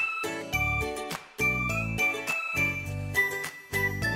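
A short musical jingle for a programme break: a melody of separate notes over low chords, in short phrases with brief pauses between them.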